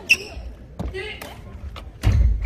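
Badminton rally: a sharp racket hit on the shuttlecock with a short ringing ping just after the start, then fainter hits roughly a second apart, with voices in the background of the hall.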